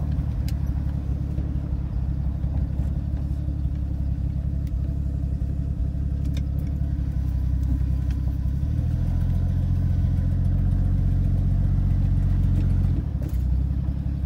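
1982 Ford F-150's inline-six engine running at low speed, heard from inside the cab. Its low, steady note rises a little about nine seconds in and drops back near the end.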